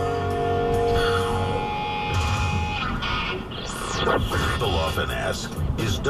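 Car radio playing music with long held notes. About three seconds in, a busier station promo with voices takes over.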